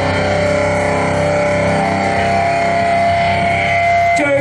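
Live metal band's distorted electric guitars and bass holding a final chord through the stage amplifiers, ringing on steadily with a high sustained tone that grows louder toward the end before it cuts off.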